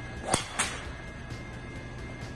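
Golf driver swung through and striking a ball off a tee: a sharp crack at impact, then a second sharp swish about a third of a second later, over background music.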